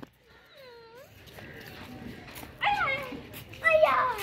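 A voice giving short calls, each sliding down in pitch: a faint one near the start, then two louder ones in the second half.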